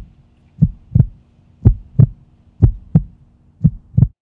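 Heartbeat sound effect: slow paired low thumps, about one lub-dub a second, four beats in all, over a faint steady low hum.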